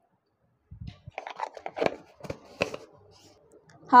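Spice-handling noise: a spoon and spice container clicking and rustling in uneven light taps and scrapes as spices are spooned into the dal in the pressure cooker.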